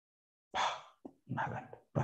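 A run of short dog-like yelping calls, starting about half a second in: three longer ones and one very brief one.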